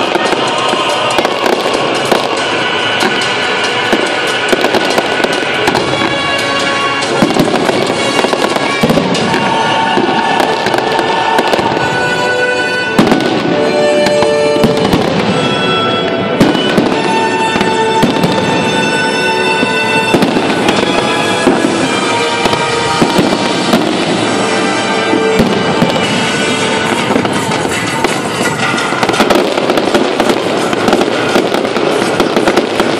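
Fireworks display: a dense, unbroken run of bangs and crackling from bursting shells and fountains, with music playing alongside.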